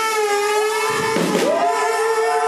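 Live band holding one long sustained note at the end of a song, a steady tone rich in overtones. A short swooping pitch glide sounds over it about a second in.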